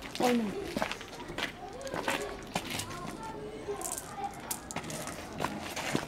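Children's voices talking quietly in the background, with a few sharp clicks scattered through.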